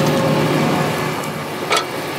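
Crop sprayer's engine running steadily at idle, a low hum under a hiss, with a single sharp knock near the end.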